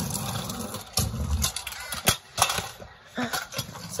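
Stunt scooter wheels rolling over rough, bumpy asphalt, a low rumble broken by sharp clacks and knocks, the loudest about two seconds in.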